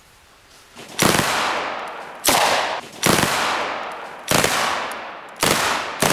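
Gunfire: five loud reports about a second apart, beginning about a second in and with another right at the end, each trailing off in a long echo through the forest.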